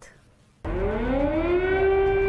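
Air-raid siren winding up: after a moment of near silence, a tone rises in pitch and then holds steady, over a low rumble.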